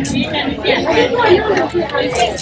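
People talking in a market, voices overlapping in chatter.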